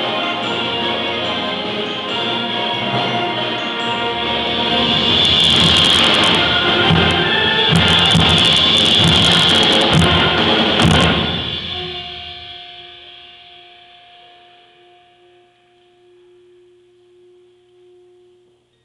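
High school concert band playing loudly, building to a climax with repeated percussion hits, then dying away about twelve seconds in to a couple of soft held notes.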